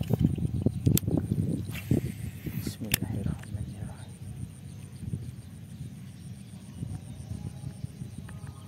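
Close-up handling noise from a fishing rod and baitcasting reel: a run of low knocks and rustles with two sharp clicks, about one and three seconds in, that settles to a quieter rumble after about four seconds.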